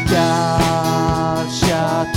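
Live church worship band playing a congregational song with a steady beat, acoustic guitar and violin among the instruments.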